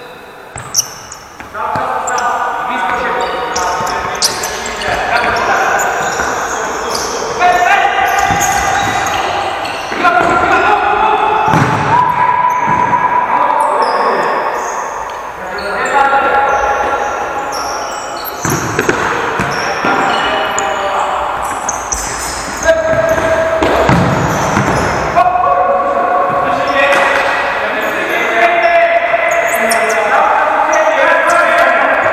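Indoor futsal game on a hard court: the ball thuds as it is kicked and bounces off the floor, while players shout and call to each other, all echoing in the large hall.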